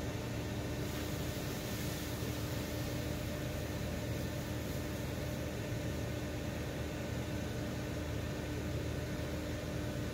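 Steady mechanical rushing noise with a low hum and one steady droning tone, like a running engine or pump.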